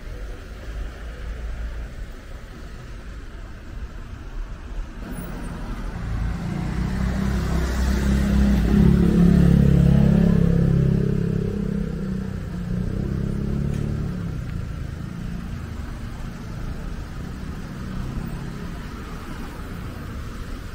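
A motor vehicle drives past close by on a city street, its engine growing louder for several seconds, peaking about halfway through, then fading away over steady traffic noise.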